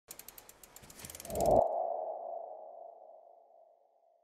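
Logo-animation sound effect: a quick run of ticking clicks builds into a swell that cuts off sharply about a second and a half in. It leaves one ringing tone that fades away over the next two seconds.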